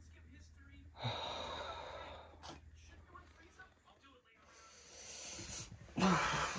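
A person's faint breathing over a low steady hum: a sharp breath about a second in that fades away, and a long rising breath near the end.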